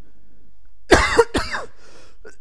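A person coughing: a quick fit of about three coughs starting about a second in, after a second of near silence.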